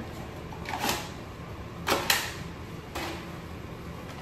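Gloved hands handling paper and packaging on a sterile back table: three short rustles about a second apart, over a steady low hum.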